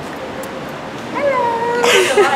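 Low steady background noise, then about a second in a drawn-out, high-pitched vocal call from a person's voice, held for almost a second and dipping slightly in pitch at its start.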